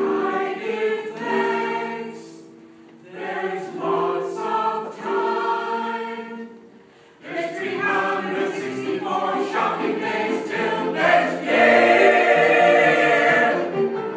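Mixed choir singing a choral Christmas song in phrases, with brief breaks about three and seven seconds in, swelling to its loudest on a held chord near the end.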